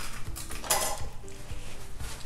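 Light clinks and handling noises of plates and cutlery on a dining table, with a brief louder rustle or scrape a little under a second in, over faint background music.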